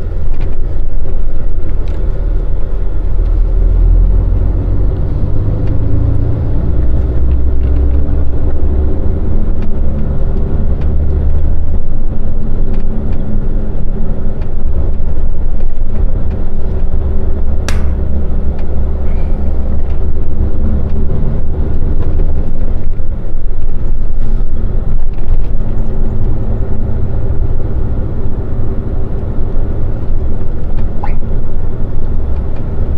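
Volvo truck's diesel engine heard from inside the cab, running steadily at low road speed with its pitch stepping up and down several times as it drives. A single sharp click sounds about 18 seconds in.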